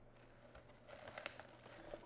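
Faint crinkling and rustling of a clear plastic packaging bag being handled and drawn out of a padded paper mailer, with a few light ticks.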